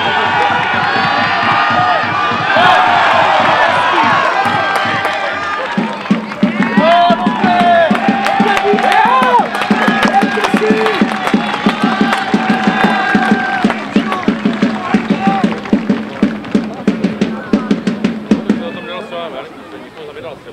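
Rugby crowd cheering and shouting in a stand, with a drum beaten steadily at about two beats a second from about six seconds in.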